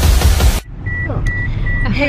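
Music with a heavy beat cuts off abruptly about half a second in. Then a car's warning chime beeps steadily, about two to three short high beeps a second, over the low hum of the car interior.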